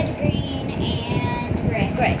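A young girl's voice singing a few high, drawn-out notes, with one note held briefly about halfway through.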